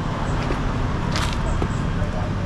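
Steady outdoor street noise with a low traffic rumble, and a short scratchy sound about a second in.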